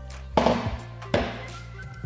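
A Pilates reformer jump board is handled against the end of the reformer's frame, knocking twice, under soft background music.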